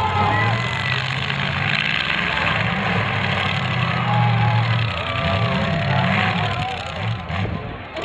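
Demolition derby car engines running and revving, their pitch rising and falling as the cars push and manoeuvre, with faint voices over the top.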